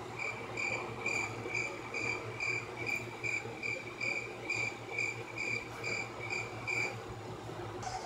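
A high, clear chirp repeating evenly about twice a second, about sixteen times, stopping about a second before the end, over a low steady hum.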